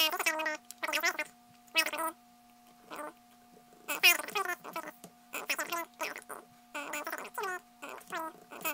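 Fast-forwarded narration: a man's voice sped up several times over into short, high-pitched chirping syllables with gaps between them. A faint steady tone runs underneath.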